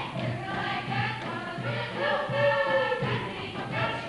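A group of voices singing a folk song together in chorus, over a steady low beat.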